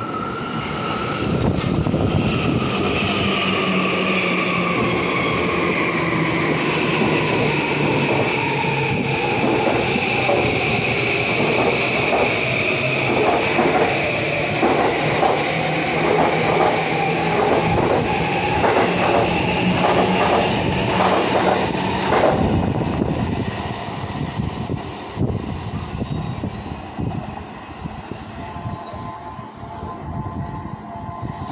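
Green Yamanote Line electric commuter train pulling in and slowing to a stop: a whine that falls in pitch as it slows, with wheels clacking over the rails. The sound drops away at about 22 seconds as the train halts.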